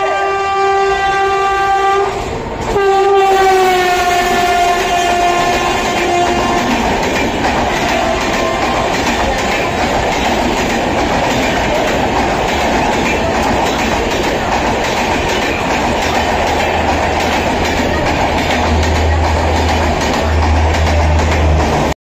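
A passenger train passing through the station without stopping sounds its horn in two long blasts, the second dropping slightly in pitch as it goes by. Then comes a steady rumble and clatter of the coaches running past on the track.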